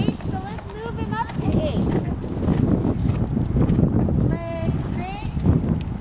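A horse's hooves beating on sand arena footing in a steady gait as it is ridden around the ring toward a small jump.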